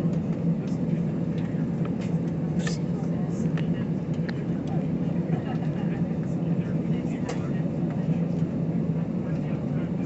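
Steady drone of an airliner's engines heard inside the passenger cabin, a low even hum with a few faint scattered clicks.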